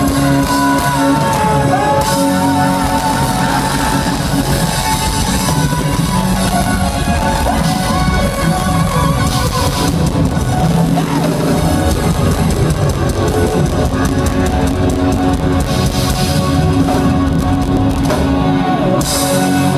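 Live rock band playing loud and steady: electric guitars, bass guitar and drum kit.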